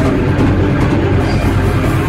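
Raw, lo-fi black metal: a dense, fuzzy wall of distorted guitar over drums. The cymbals thin out for about the first second.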